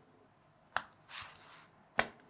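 A flat blade being worked into the seam of a plastic laptop battery case: a sharp click about three quarters of a second in, a short scrape, then another sharp click at the end, the case resisting being pried apart.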